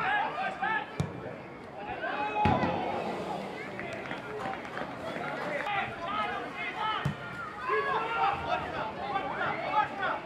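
Several voices shouting and talking over one another during a football match. Sharp knocks of the ball being kicked come about a second in, at about two and a half seconds (the loudest) and at about seven seconds.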